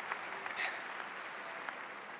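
Large arena audience applauding in reaction to a joke, the clapping easing slightly toward the end.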